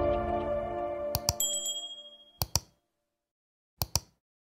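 Intro music fading out under like-and-subscribe animation sound effects: a pair of clicks about a second in, a short bright ding, then two more pairs of quick clicks.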